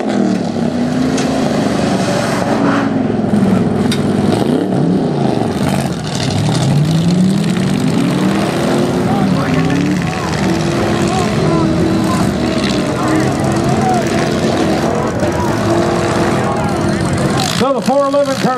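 Several V8 demolition-derby car engines revving at once, their pitches rising and falling in long, overlapping sweeps.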